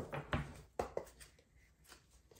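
Tarot cards and a deck being handled on a table: a few light taps and rustles in the first second, then quieter handling.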